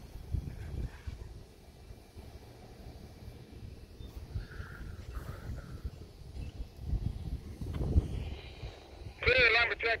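Wind buffeting the microphone in uneven, low rumbling gusts, strongest a couple of seconds before the end. Near the end a thin, narrow-band voice comes over a railway radio scanner, calling switching moves for track two.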